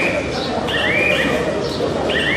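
A kabaddi raider's chant: a high, shouted voice repeating 'kabaddi' over and over in a steady rhythm, about one call a second, over a constant murmur of voices in the hall.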